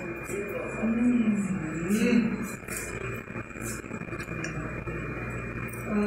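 A person's voice making two short wordless 'hmm' murmurs about one and two seconds in, followed by a few faint clicks from handling the food in its plastic container.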